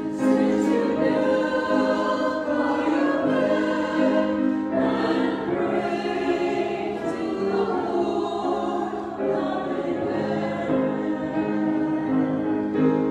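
Mixed choir of men's and women's voices singing together in long held chords.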